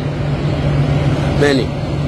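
A steady low mechanical hum over a rumbling noise, under one short word from a man's voice about one and a half seconds in.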